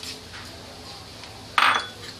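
Bay leaves going into hot oil in a steel kadai with a low frying hiss, and one sharp metallic clink against the kadai about one and a half seconds in.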